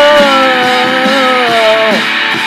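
Guitar-rock music: a long held electric-guitar lead note that sags slowly in pitch and then drops sharply near the end, over a steady rock beat.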